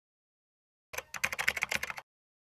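Computer keyboard typing: a rapid run of key clicks, about a dozen a second, starting about a second in and lasting about a second.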